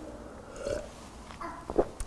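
A man drinking from a cup: quiet swallowing and mouth sounds, with a couple of faint clicks near the end.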